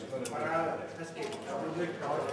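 Men's voices talking in the background, with one short sharp click just after the start.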